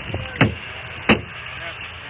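Police camera audio at a stopped car after a chase: a steady vehicle and road noise, thin and muffled, broken by two sharp knocks about two-thirds of a second apart.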